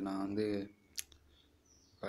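A man's voice speaking briefly, then a single sharp click about a second in.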